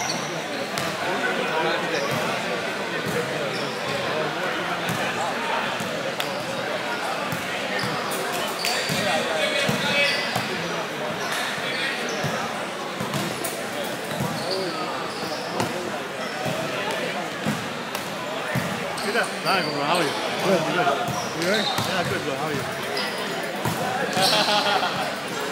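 Reverberant gymnasium hubbub of many voices chattering and calling out, with repeated smacks and bounces of volleyballs being hit on the courts.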